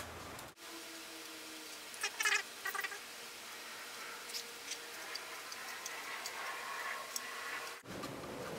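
Plastic squeaking and creaking as a small elbow fitting is screwed by hand into a freshly drilled hole in a plastic intercooler pipe, cutting its own thread. A few short squeaks come about two seconds in, followed by occasional faint ticks.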